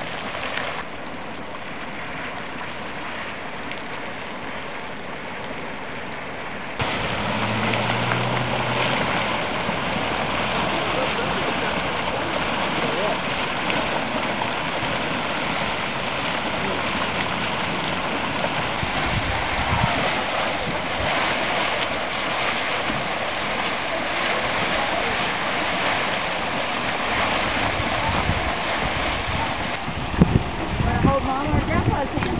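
Steady rushing hiss of steaming hot springs and vents, with churning, gurgling water. About seven seconds in it jumps suddenly louder and fuller, then stays steady.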